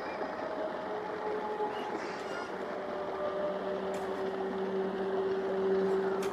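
Experimental music from a recording: a thick noisy wash with a few long held notes. The two lowest notes swell in the second half.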